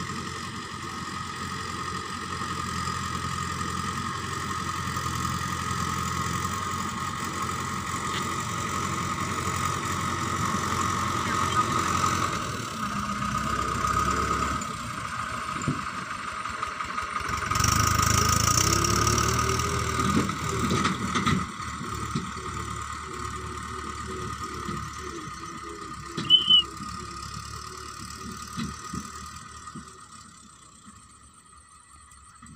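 Diesel engine of a 2009 Mahindra tractor running steadily under load as its front dozer blade pushes soil, loudest around the middle. There is a short, sharp high-pitched sound near the end.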